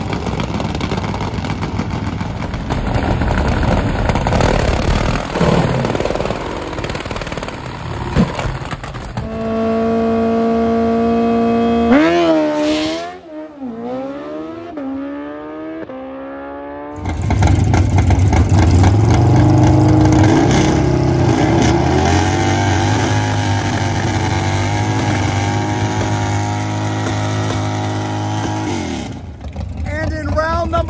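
Drag racing motorcycle engines running at full noise, loud and rough at first. A steady high rev holds for a few seconds, then swoops down and up in pitch and fades. After a sudden cut, another loud, steady engine run follows.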